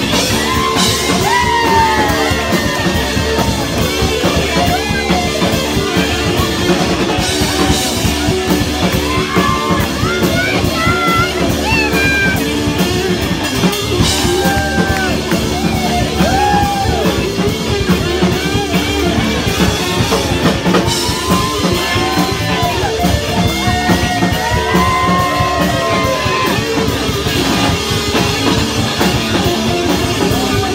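Rock band playing live and loud: electric guitar over a drum kit, continuous throughout.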